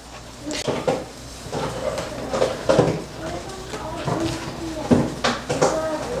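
A woman's low, wordless voice sounds come and go, mixed with a few light clinks of a bowl and kitchen utensils.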